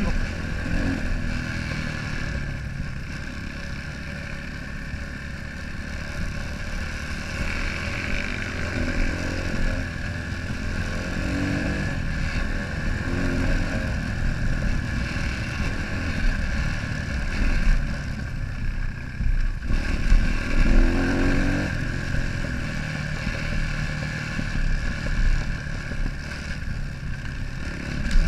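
Single-cylinder enduro motorcycle engine running under way at speed, its revs rising and falling, over a heavy low rumble of wind and track on the microphone, with the loudest jolts about twenty seconds in.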